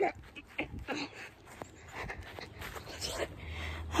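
A person panting close to the microphone: short, quick breaths about three a second, as after exertion.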